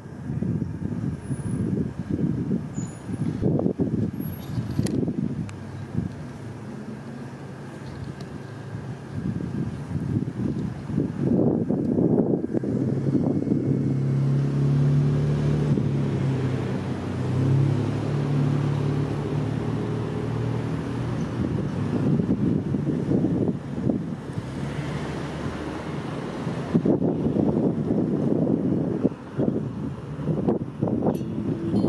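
Road traffic: cars and a truck passing close by, rumbling and swelling as they go. The truck's engine hums steadily for several seconds in the middle.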